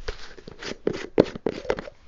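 Plastic screw lid of a jar of white paint being twisted open by hand: a quick, irregular run of sharp plastic clicks and scrapes.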